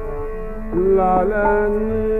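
Hindustani classical vocal in raag Yaman Kalyan: a male voice sings a gliding phrase about two-thirds of a second in, over a steady tanpura drone, with a low tabla stroke near the end.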